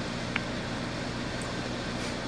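Steady background hum and hiss of air conditioning or ventilation running, with one faint click about a third of a second in.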